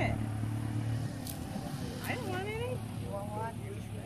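A steady low engine hum that drops away about a second in, under faint conversation.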